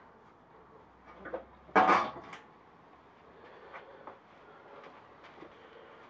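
Metal clunks and a scrape as a motorcycle engine is wiggled against its steel frame, with a few faint knocks and one louder, brief scrape about two seconds in.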